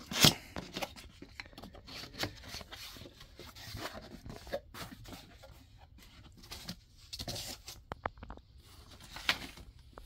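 A cardboard shipping box being opened by hand, with a sharp snap right at the start as the tuck-tab lid comes free. The flaps are folded back and a foam insert is rubbed and lifted out, making irregular scraping, rustling and light clicks.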